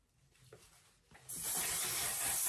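One/Size makeup setting spray misting onto the face: a steady, continuous hiss that starts suddenly about a second and a quarter in, after a couple of faint clicks.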